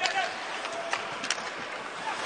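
Ice hockey arena ambience: a steady crowd murmur, with two sharp clacks of sticks on the puck about a second in.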